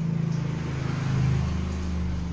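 A low motor hum that swells to its loudest a little past a second in, then fades away.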